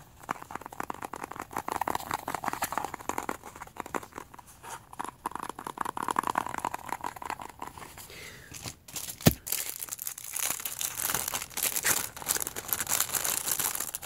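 Clear plastic packaging bag crinkling and rustling in the hands, with one sharp click about nine seconds in. The crinkling grows denser and brighter over the last few seconds.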